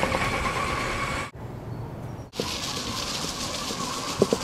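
Small electric four-wheel-drive robot platform driving, its drive motors whining steadily over rolling and outdoor noise. The sound changes abruptly twice as clips cut, with a quieter stretch in the middle.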